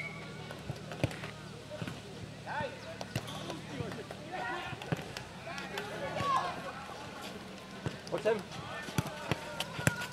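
Footnet ball kicked and bouncing on a clay court: sharp single knocks scattered through, coming closer together near the end, among players' voices.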